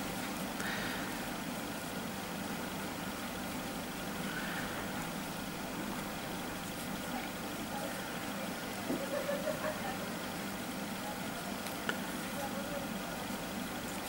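Steady low background hum and hiss, with faint soft handling sounds of crochet hook and cotton thread being worked and a single small click about twelve seconds in.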